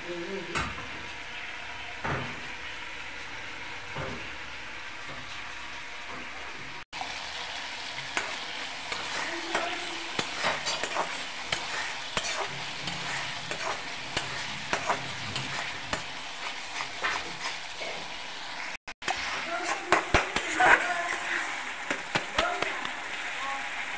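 Spiced curry gravy sizzling in a steel kadai on a gas flame, with a metal spatula stirring and scraping against the pan. The scrapes and knocks come thicker and louder toward the end.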